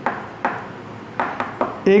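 Chalk writing on a chalkboard: a few sharp taps, about half a second, a second and a second and a half in, with scratchy scraping between them as figures are written.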